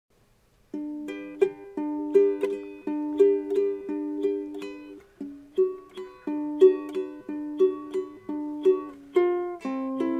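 Ukulele strummed in a steady, repeating chord pattern, starting after a brief silence, with a change of chord near the end. It is the song's instrumental intro, with no voice yet.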